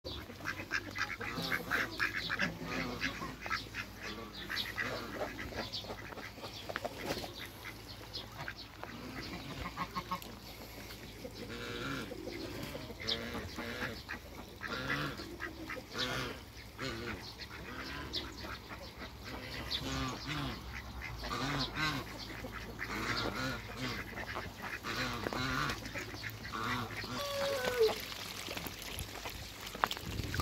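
A flock of domestic ducks quacking and calling, many short calls overlapping throughout, with a louder call just before the end.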